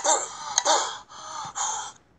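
A child gasping, several breathy, voiced gasps in quick succession.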